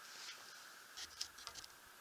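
Quiet room tone with a faint steady high whine and a few soft light ticks in the second half.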